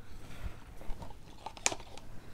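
Gloved hands handling plastic paint cups and a stir stick: soft scattered taps and rustles, with one sharp click near the end.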